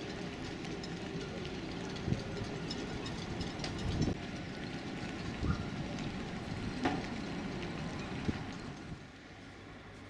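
Outdoor town street ambience: a steady rumble of passing traffic with scattered knocks and clatter, getting quieter near the end.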